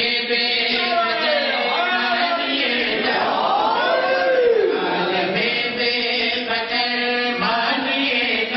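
A man's voice chanting a drawn-out melodic recitation of mourning poetry at a microphone, with long held, wavering notes and a slow rise and fall in pitch through the middle.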